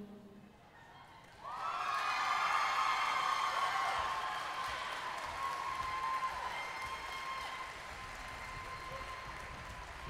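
The last note of the routine's song fades out, and about a second and a half later an audience starts applauding and cheering, with high shouts and whoops over the clapping, slowly dying down.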